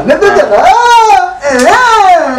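A person's voice in two drawn-out, high-pitched cries, each rising and then falling in pitch, one after the other.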